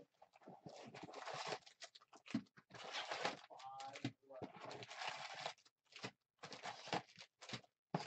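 A sealed trading-card hobby box being torn open by hand: its plastic wrap crinkles and the cardboard tears in a run of quick, uneven bursts.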